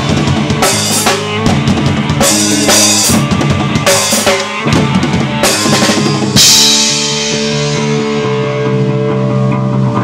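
A rock band playing live, with fast drums under electric guitar. About six seconds in comes a loud hit, then a held chord rings out with fewer drum strokes.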